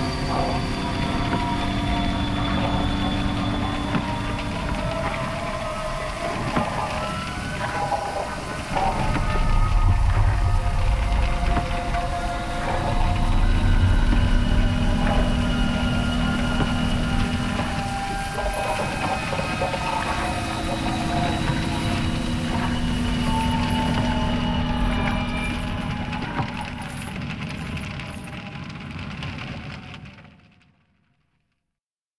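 Experimental ambient electronic music: layered sustained drones and held tones over a crackling, noisy texture. A deep low rumble swells through the middle, and fine clicks and crackles come in towards the end. The piece then fades out.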